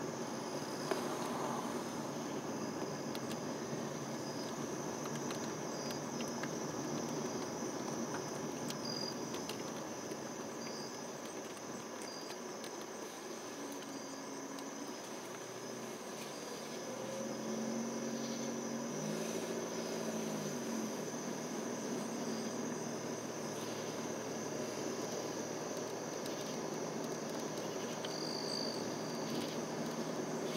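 Steady night chorus of crickets and other insects, a continuous high trill with short repeated chirps, over the low road and engine noise of a slowly moving car.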